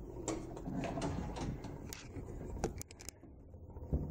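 Faint scattered clicks and light knocks over a low rumble, with a quick run of clicks about three seconds in: handling noise from a handheld camera being carried through the rooms.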